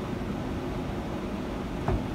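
A steady low hum with a rumble underneath, and a short, low thump just before the end.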